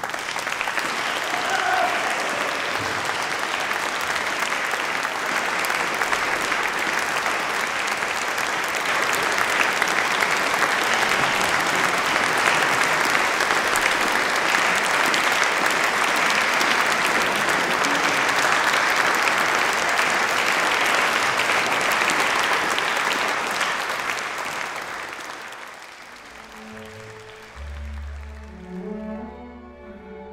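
Audience applauding at the end of a string ensemble's performance, steady and sustained, fading out over the last few seconds.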